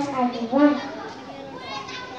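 A young girl speaking into a microphone for about the first second, then faint children's voices in the background.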